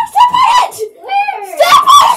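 A girl's voice, very high-pitched and loud, in several short cries that bend up and down in pitch.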